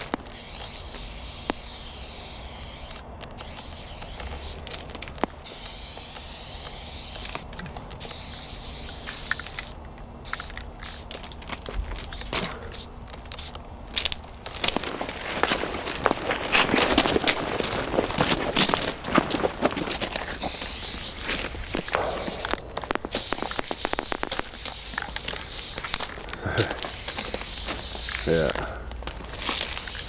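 Aerosol spray-paint can hissing in on-and-off bursts of one to three seconds, with short breaks between strokes as a graffiti tag is painted. In the middle stretch, a denser run of sharp clicks and scraping noise takes over for a few seconds.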